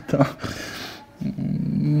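A man laughing briefly with a breathy exhale, then a drawn-out low hesitation sound ("nu...") as he starts to answer.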